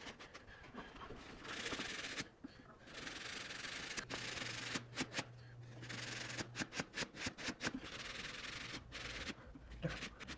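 Damp sponge rubbing back and forth over the papery fabric of a cellular blackout blind, scrubbing off a dirt smudge, in strokes with short pauses between them. Scattered light clicks come in the middle seconds.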